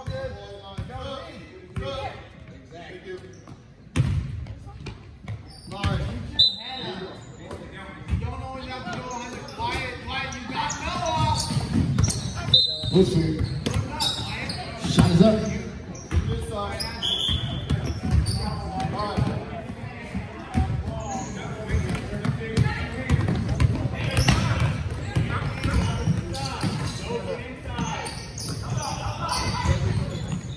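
Basketball bouncing on a hardwood gym floor during a game, with repeated sharp knocks, under a steady hubbub of players' and spectators' voices echoing in a large gym.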